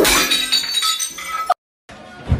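Glass breaking with a loud crash, followed by pieces clinking and ringing. The sound cuts off suddenly about one and a half seconds in.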